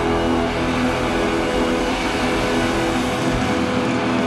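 Live rock band with loud distorted electric guitars holding a dense, noisy sustained chord, a few steady notes ringing through it.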